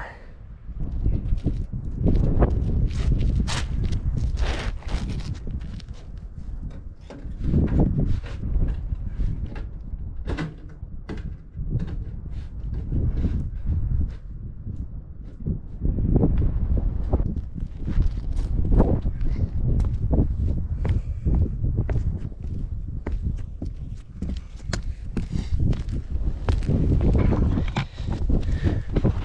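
Footsteps, scuffs and irregular knocks on a granulated torch-on roof, with wind buffeting the microphone.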